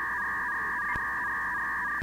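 A steady electronic tone of two pitches sounding together, like a telephone tone, held unchanged for about two seconds and cutting off suddenly at the end: a sound effect laid in during editing.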